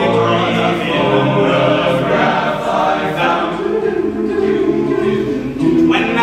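Men's a cappella group singing in close harmony, several voices holding sustained chords with no instruments.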